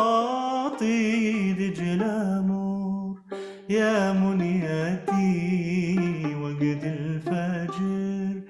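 A man singing an Arabic song in maqam bayati, with ornamented, wavering phrases and a short breath pause about three seconds in, accompanying himself on a violin held guitar-style and plucked.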